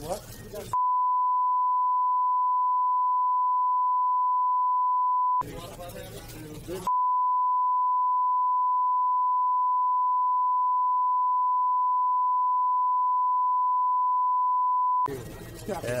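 A steady 1 kHz censor bleep blanks out the audio in two stretches: about four and a half seconds of pure tone starting about a second in, a break of about a second and a half of voices and room sound, then about eight seconds more of the tone. It is a redaction tone laid over speech in the released recording.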